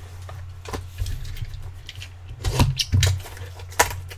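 Hands opening a cardboard Topps Triple Threads box and pulling out the packaged cards: scattered scrapes and taps of cardboard and wrapping, a few louder ones in the second half and the sharpest tap near the end. A steady low hum runs underneath.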